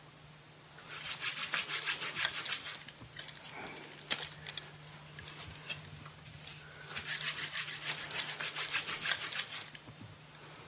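Floury hands rubbing and rolling dough between the palms in two spells of quick, scratchy strokes: the first about a second in, the second from about seven seconds in until just before the end. A steady low hum runs underneath.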